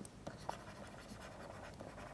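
Faint scratching of a stylus writing on a pen tablet, with a light tick about half a second in.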